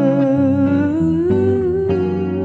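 A woman's wordless vocal, humming, holding a long note with vibrato that slides up a little, over a jazz electric archtop guitar playing a few chords.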